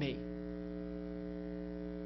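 Steady electrical mains hum: a low buzz with several higher overtones, holding unchanged throughout, under the last of a spoken word at the very start.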